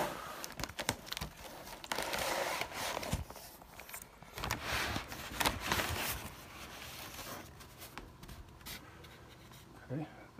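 A cardboard shipping box and its plastic air-cushion packing being handled and searched: irregular rustling, crinkling and scraping with a few sharp knocks, busiest in the first six seconds and quieter after.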